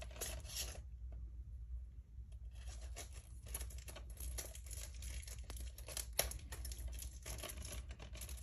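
Plastic shrink wrap being torn and peeled off a Blu-ray slipcover: soft intermittent crinkling and tearing. There is a brief quieter stretch about a second in, and a sharper snap about six seconds in.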